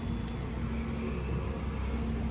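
A steady low mechanical hum with a faint steady tone in it, from a running motor or engine nearby.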